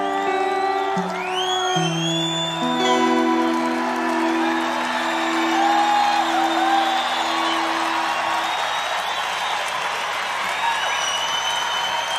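Acoustic guitar's closing chords ringing out and dying away about eight seconds in, while a large crowd applauds, cheers and whistles.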